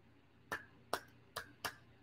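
Four faint, sharp clicks, irregularly spaced, in a short pause between sentences.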